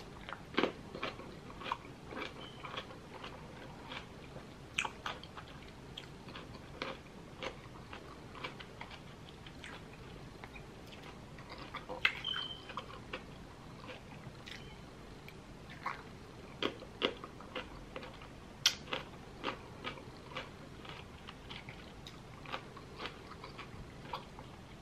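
Close-miked chewing of crisp raw cucumber slices: a person biting and crunching through the slices, a run of irregular short crunches.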